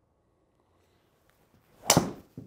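A golf driver swung hard: a short rising swish of the club, then one sharp, loud crack as the driver head strikes the ball off the tee near the end. The noise is from the driver, with little from the impact screen, which is very quiet.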